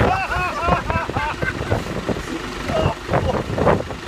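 Isuzu Trooper 4x4 driving slowly through deep mud, its engine running under load, with voices and laughter over it in the first second or so.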